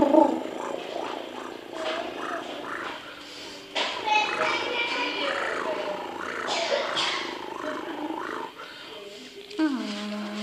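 Domestic cat purring steadily as it is stroked, with a person's soft voice over it at times and a longer pitched call starting near the end.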